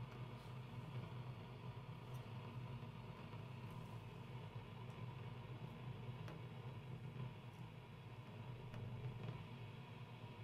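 Faint steady low hum and hiss from a tube radio's speaker as it is tuned on shortwave with no station coming in, with a few faint clicks.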